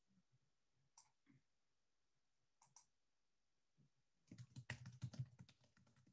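Faint clicks of a computer keyboard: a few single keystrokes, then a quick run of typing about four seconds in.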